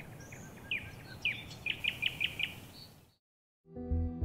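Birdsong: scattered short chirps over a faint hiss, then a quick run of five downward chirps. It cuts off suddenly about three seconds in, and soft music begins just before the end.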